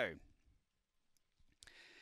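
Near silence, then about one and a half seconds in a single faint sharp clack as the greyhound starting-box doors spring open, followed by a faint steady rushing noise.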